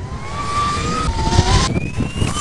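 Electric superbike's motor whining under hard acceleration, the whine rising steadily in pitch over tyre and wind rush. About three-quarters of the way through it breaks off and a higher whine starts and climbs again.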